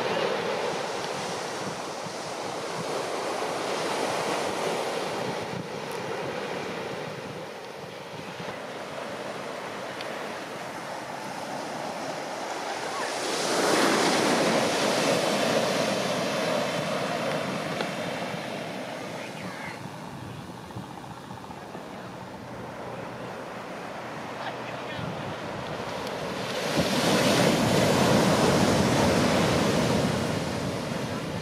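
Heavy shorebreak surf: two big waves crash, one about halfway through and one near the end, each lasting a few seconds, with a steady wash of lesser surf between them.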